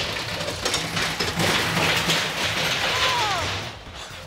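A steady mechanical rumble and rattle, fading near the end, with a short falling tone about three seconds in.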